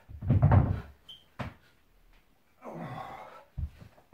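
Dull thuds on a wooden floor from dumbbells and feet during a dumbbell burpee. The loudest, heaviest thud comes about half a second in, with a sharper knock shortly after and a pair of lighter thumps near the end.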